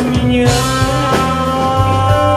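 Live rock band playing a song: electric bass, guitar and drums under a man's singing voice holding long notes.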